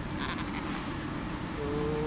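Steady low background rumble with a brief crackle about a quarter second in; a held vocal hum begins near the end.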